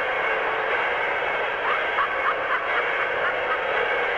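A steady hiss of noise like static, cut off above and below so it sounds thin and muffled, with faint wavering tones in the middle.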